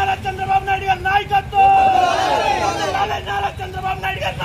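A group of men shouting slogans in unison, the same short phrase repeated over and over with raised, strained voices.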